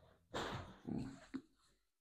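A person breathes out sharply and gives a short groan while a leg is being adjusted.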